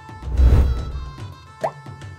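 Light background music with a quiz transition sound effect: a loud whooshing hit with a deep boom about half a second in, then a short rising bloop near the end.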